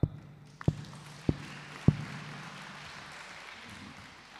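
Three heavy knocks about 0.6 s apart, typical of the ceremonial gavel strikes that mark an event as officially opened. Audience applause swells under them and carries on after.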